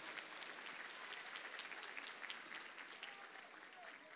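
Congregation applauding: faint clapping of many hands that dies away toward the end.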